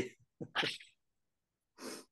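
Short breathy laughs from a person: two quick bursts about half a second in and another near the end.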